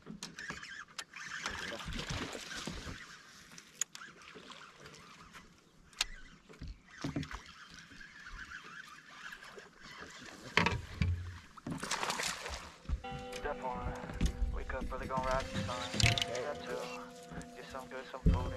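Open-air ambience on a fishing boat: a faint hiss with scattered sharp clicks and knocks from the deck and tackle. Background music comes in about thirteen seconds in.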